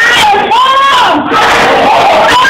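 A woman preacher's voice through a microphone in a loud, drawn-out, sung preaching cadence, with one long held, arching cry about half a second in, and the congregation's voices calling out along with her.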